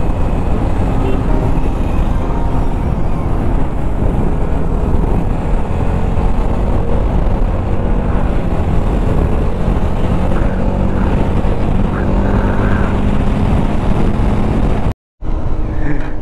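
Wind rushing over the camera microphone with the steady drone of a Bajaj Dominar 400's single-cylinder engine underneath, cruising at about 80–90 km/h. The sound cuts out for a moment near the end.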